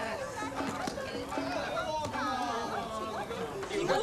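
Several people's voices chattering indistinctly, with a faint steady tone under them.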